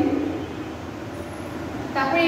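A woman's voice breaks off at the start, then a steady background noise without distinct events, like distant traffic or room hum, fills the pause.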